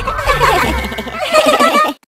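Several cartoon voices laughing together in quick, wavering bursts over a steady background music bed, all cutting off suddenly near the end.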